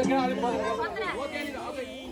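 Several people chattering at once, loose talk among a group.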